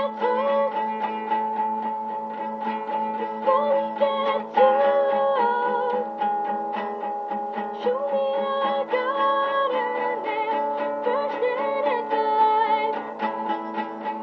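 Nylon-string classical guitar strummed in a steady, even rhythm, with a girl singing a slow melody over it.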